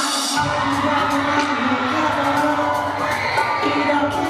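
Live pop concert music played loud through an arena's sound system: a sustained keyboard chord with a bass line coming in about half a second in, under the audience's cheering and screaming.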